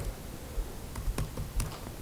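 Computer keyboard keystrokes: a short burst of irregularly spaced key clicks as a shell command is typed.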